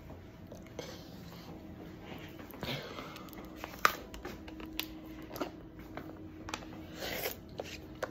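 A plastic water bottle handled near the face: scattered crinkles and clicks of thin plastic, with one sharp click about four seconds in and a few short breaths.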